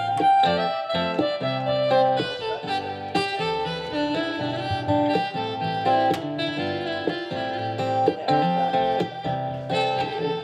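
Instrumental break of an acoustic folk-country song: a wind instrument carries the melody in held notes over strummed acoustic guitar and upright bass.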